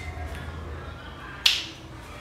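A single sharp snap about one and a half seconds in, over a low steady hum.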